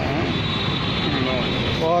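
Busy street background: steady traffic and engine noise, with people talking over it.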